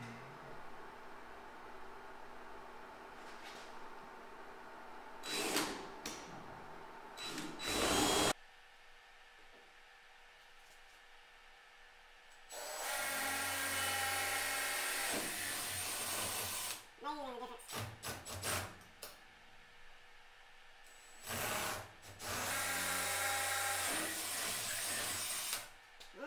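DeWalt 20V Max cordless drill with a 3/16-inch bit drilling pilot holes for non-self-tapping metal screws. It runs steadily twice for about four seconds, first about 12 seconds in and again about 22 seconds in, with short trigger bursts before and between the runs.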